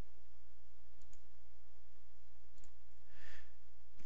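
Computer mouse clicks: a quick double click about a second in and another pair of clicks a second and a half later, over a steady low hum. A short soft noise follows near the end.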